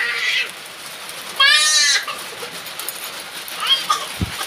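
A high-pitched, tremulous bleating animal call, once about a second and a half in, with a shorter, fainter call near the end.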